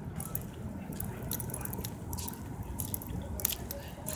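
Footsteps on a paved walkway and handling noise from a hand-held cell phone carried while walking: irregular light clicks and scuffs over a steady low rumble.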